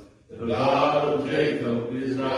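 A man's voice intoning in a drawn-out, chant-like delivery, with a short break just after the start.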